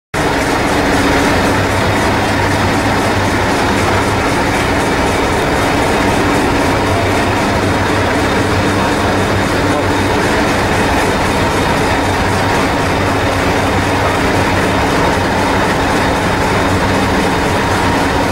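Train running: a loud, steady rumble with a low hum, unchanging throughout.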